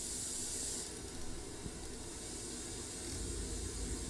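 Pink noise test signal playing steadily through a Marantz 3800 preamplifier as its treble slider is moved: the hiss's highs are bright at first and are cut back about a second in.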